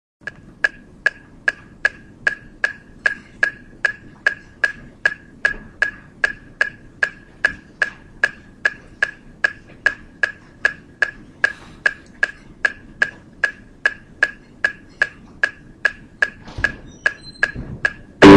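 Metronome clicking steadily at 150 beats per minute, each click a short high beep, counting off the tempo before the marimba part begins.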